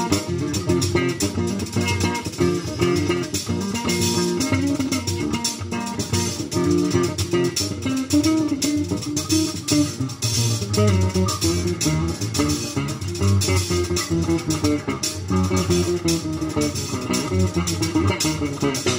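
Live instrumental Latin jazz from acoustic guitar, electric bass guitar and a drum kit with cymbals keeping a steady groove.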